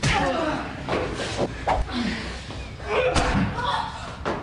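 Scuffle: several thuds and slams of blows and bodies, with short shouts and grunts between them.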